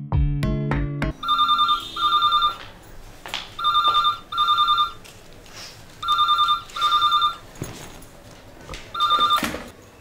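Background music cuts off about a second in, then a landline telephone rings in pairs of short electronic trilling rings, a pair about every two and a half seconds. The last ring near the end comes alone and cut short as the phone is answered.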